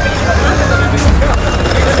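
Busy street noise: a steady low rumble of vehicle engines under the chatter of a crowd.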